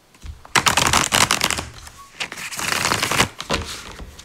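A tarot deck riffle-shuffled by hand in two bursts of rapid card flicks, the first about half a second in and the second around two seconds in, with a few softer card taps near the end.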